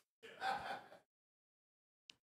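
A man's short, breathy gasp picked up by a microphone, lasting under a second.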